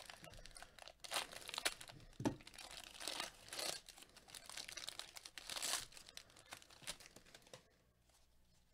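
A Bowman Draft trading-card pack's foil wrapper crinkling and tearing as it is opened by hand, in faint irregular bursts that die away shortly before the end.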